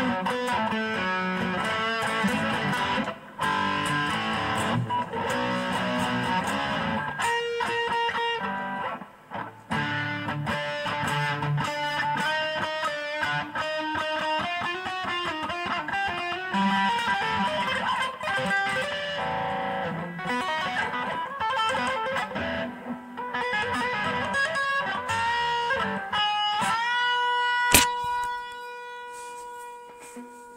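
Black Les Paul-style electric guitar played solo: a run of picked riffs and single-note lines, broken by two brief pauses. Near the end a sharp click, then a final note rings out and fades.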